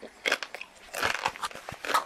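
Tortilla chips crunching as they are bitten and chewed, several separate crunches about a second apart.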